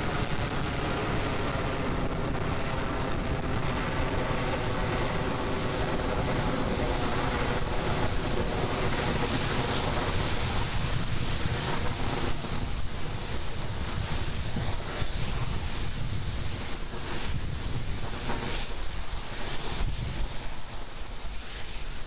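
Falcon 9's nine Merlin 1D first-stage engines firing during ascent: a steady, rumbling roar whose highest hiss dims after about five seconds as the rocket climbs away.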